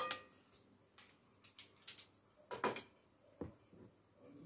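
A few light knocks and clicks of utensils and dishes being handled and set down on a table, the first with a short ring and the loudest about two and a half seconds in.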